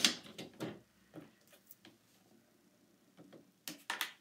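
Paper trimmer and cardstock being handled while a photo mat is trimmed: a sharp click at the start, a few light ticks and paper rustles, a quiet stretch, then two sharp clicks near the end as the trimmed piece is lifted off.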